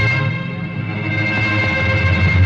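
Dramatic film background music: sustained high chord tones held over a heavy low bass.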